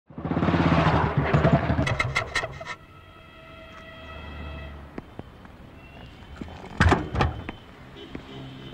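Motorcycle engine running loudly with some rattling clicks, stopping abruptly a little under three seconds in. Quieter steady tones follow, then two heavy thuds close together near the end.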